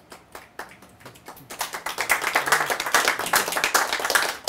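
A group of people applauding: a few scattered claps at first, swelling about one and a half seconds in to steady, dense clapping.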